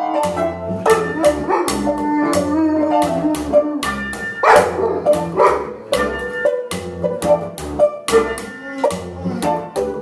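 Improvised music on keyboard, banjo and bass playing a steady groove of plucked bass notes under banjo and keys. A dog's voice joins in about midway, the howling dog the band counts as part of the act.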